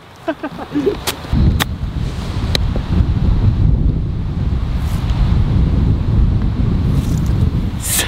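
Wind buffeting the microphone: a loud, low, rough rumble that sets in about a second in and runs on, with a few sharp clicks in the first few seconds.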